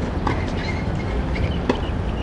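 Outdoor ambience with a steady low rumble of wind on the camcorder microphone, and two light knocks, one about a quarter second in and one near the end.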